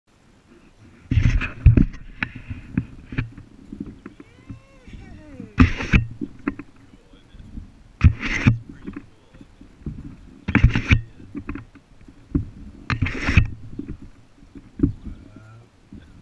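A baby swing moving back and forth: a rush of air over the swing-mounted camera and a creak from the swing hangers come about every two and a half seconds, with small clicks between them.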